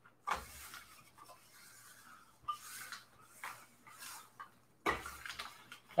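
Sheets of coffee-dyed paper being handled and a clothes iron rubbed across them: a few soft scraping swishes with short gaps between.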